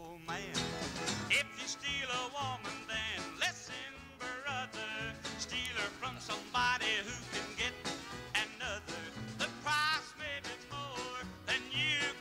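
Country band playing an instrumental passage: a lead instrument carries the melody with a quick wavering vibrato over a steady beat.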